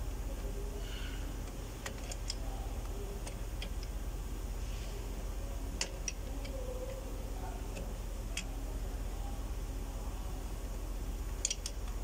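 Sparse, light metallic clicks as a wrench turns a wind-back tool, screwing the piston back into a Fiat's rear brake caliper whose parking brake works through the piston, over a steady low hum.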